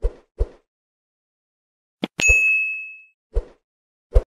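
Sound-effect mouse clicks with a bell ding: two quick clicks at the start, another click about two seconds in, then a bright bell ding that rings out for about a second, and one more click near the end.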